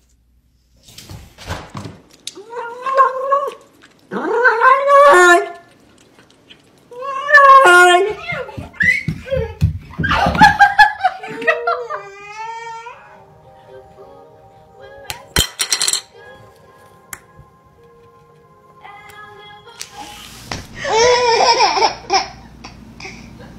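Excited voices and squeals in short bursts, then a stretch of held musical notes, then a baby laughing loudly near the end.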